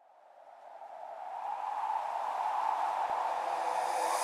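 A rushing noise with no clear pitch fades in from silence, swelling over about two seconds and then holding steady.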